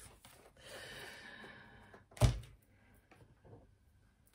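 Soft rustle of tarot cards being handled, then a single thump about two seconds in as something, most likely a deck, is set down on the table, followed by a few faint ticks.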